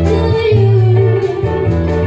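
Live acoustic band music: a woman singing a held note into a microphone over low bass notes and plucked string accompaniment, with cajon and violin in the band.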